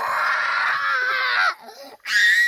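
A child's high-pitched scream, held steady for about a second and a half, then cut off suddenly.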